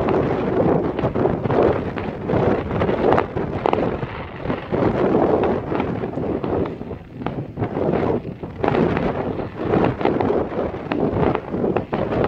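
Fireworks going off with scattered sharp bangs and crackles, partly buried under wind buffeting the microphone, which is the loudest sound.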